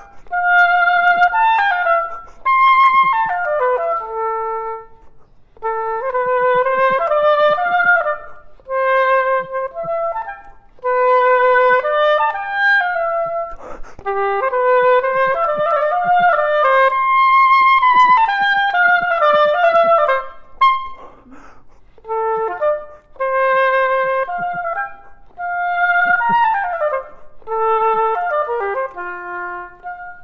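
Solo oboe playing quick stepwise runs of notes in a series of short phrases with brief breaks between them, played to show the difference between triplets and quadruplets.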